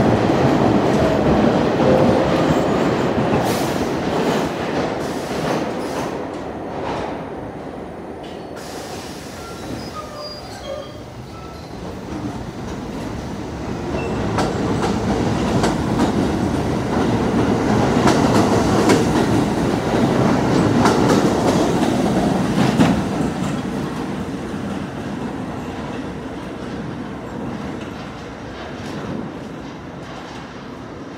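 R68 subway train moving along the platform: a steady rumble of wheels with clattering over rail joints. The rumble swells, eases off midway, then swells again before fading, with a few faint, brief wheel squeals.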